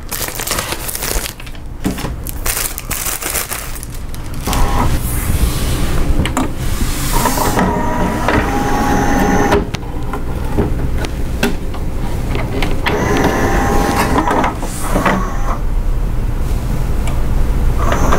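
Pioneer CLD-3390 LaserDisc player's motorized tray and disc mechanism loading a disc. Paper-sleeve rustle and handling clicks come first, then a steady low motor hum with a whining motor tone twice.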